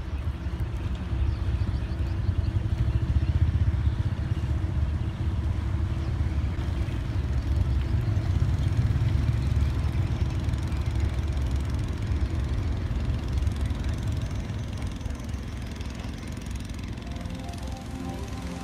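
Engine of a sand-laden river barge running steadily as it moves along the river, heard as a continuous low rumble.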